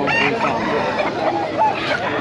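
A gamecock crowing.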